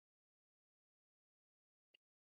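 Near silence: a dead-quiet gap between speakers' lines.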